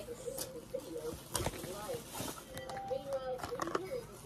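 Product packaging being handled: a spray bottle and a cardboard box moved about, giving a few sharp knocks and rustles. A faint voice makes short sounds in the background.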